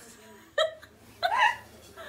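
Girls giggling under the covers: two short bursts of laughter, the first about half a second in, the second a little longer about a second in.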